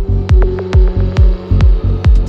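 Psytrance track playing: a kick drum on every beat, a little over two a second, each kick dropping in pitch, with a bass line between the kicks and a held synth note above.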